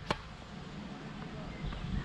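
A tennis racket striking a tennis ball on a topspin forehand: one sharp pock just after the start. Then only low, steady outdoor wind noise.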